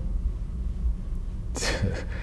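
A person draws one short, sharp breath about one and a half seconds in, over a steady low hum.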